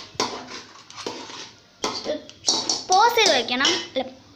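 A metal spatula knocking and scraping against a steel kadai as its frothy contents are stirred, a few short knocks in the first half; a child's voice speaking loudly in the second half is the loudest sound.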